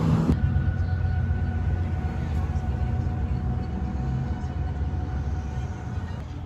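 Steady low rumble of a vehicle engine running, with a faint steady whine above it.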